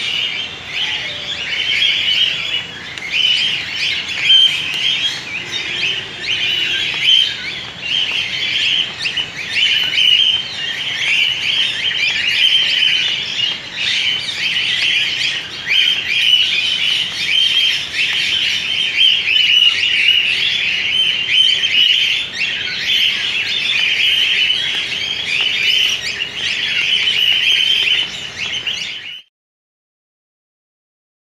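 A large aviary flock of cockatiels and other small parrots chirping and chattering continuously in a dense, high-pitched mass of calls. It cuts off abruptly about a second before the end.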